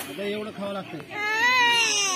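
A young child crying out in one long wail that rises in pitch and then falls, starting about a second in after a few spoken words.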